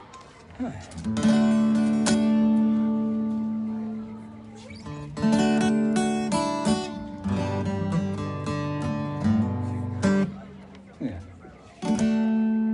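Steel-string acoustic guitar strummed without singing: one chord about a second in left to ring out, then a run of strummed chords, a short lull and another chord near the end, played while the guitarist checks a funny buzz in the sound.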